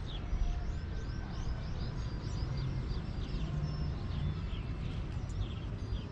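Birds chirping: a rapid run of short, falling high notes in the first couple of seconds, then scattered calls, over a steady low rumble.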